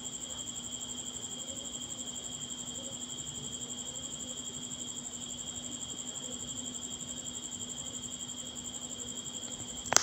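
A faint, steady, high-pitched insect trill, typical of a cricket, over a faint low steady hum. No sewing-machine stitching is heard.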